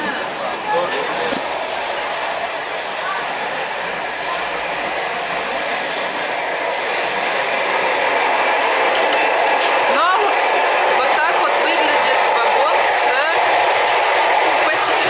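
Running noise of a moving passenger train heard from inside the carriage: a steady rushing rumble of wheels on the track. It grows louder about halfway through, nearer the end of the car by the vestibule, and a few short rising squeaks come near the end.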